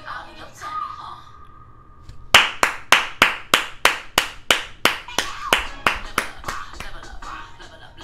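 Hand clapping in a steady rhythm, about three or four claps a second, starting about two seconds in and growing weaker towards the end, over quiet background music.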